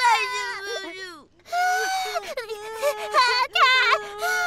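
Voice-acted cartoon babies crying. One baby's wavering cry falls away and breaks off about a second in, then another baby starts a new run of long wails and sobbing cries.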